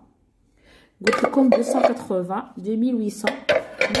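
Dishes and kitchenware clinking and knocking as they are handled, starting about a second in after a brief silence.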